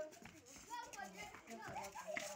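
Children's voices, faint, talking and calling out in short bursts during rough play.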